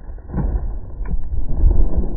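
Uneven low rumble of wind buffeting the microphone outdoors, with a couple of faint ticks.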